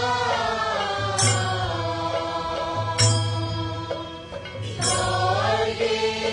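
A group of voices chanting a song together in slow, gliding phrases, with a deep barrel drum struck once about every two seconds, three beats in all.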